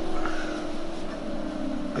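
Steady electrical or mechanical hum from bench lab equipment, its pitch drifting slowly downward as the setup is being powered down.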